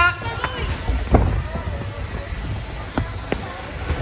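Scattered thuds and slaps of gloved punches and kicks landing in a sparring exchange, with bare and shin-padded feet shuffling on the ring canvas; the loudest hit comes a little over a second in.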